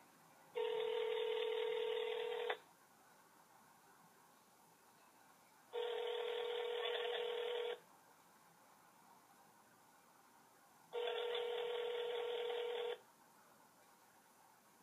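Telephone ringback tone played through a smartphone's speakerphone: three steady two-second rings, evenly spaced about three seconds apart, as an outgoing call waits to be answered.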